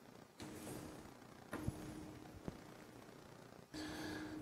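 Faint shuffling and a couple of light knocks as an office chair is pulled up and sat in.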